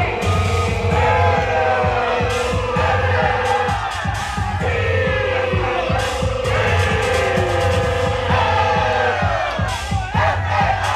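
Loud ballroom vogue dance track with a heavy bass and a steady beat. Long held notes ride over it, breaking off about four seconds in and coming back shortly after.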